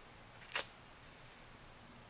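Quiet room tone with one short, sharp click about half a second in.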